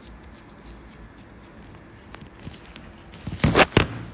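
Low room tone with a few faint ticks, then two or three short, loud rustling noises about three and a half seconds in.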